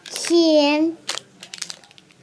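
A young child's voice says one drawn-out word, then light crinkling and small clicks of wrapped candies being handled in the hands.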